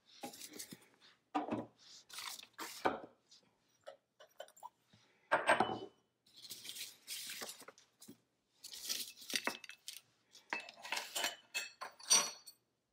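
Kitchen containers, bowls and measuring cups being picked up and set down one after another on a paper-covered table, with paper rustling, irregular knocks and a few ringing clinks near the end.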